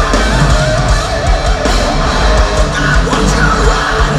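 Thrash metal band playing live: electric guitars and drums at full volume, heard from the audience through the club's PA.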